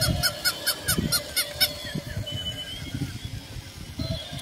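Battery-operated walking toy animal running: a fast, even string of short falling chirps with clicks, about six a second, loud at first and fading after about a second and a half.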